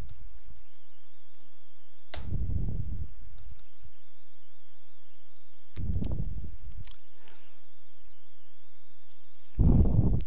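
Three short, low puffs of air noise on the microphone, each about a second long, about two, six and nine and a half seconds in, over a faint steady hum.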